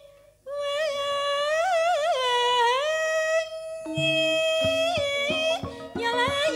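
A sinden (female Javanese gamelan singer) sings a solo line with wavering vibrato and long held notes. About four seconds in, gamelan instruments come in under her voice with struck notes.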